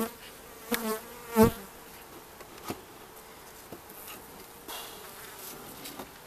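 Honeybees humming steadily over an open hive. A sharp crack about a second and a half in and a lighter click near the three-second mark come from a metal hive tool prying a frame loose.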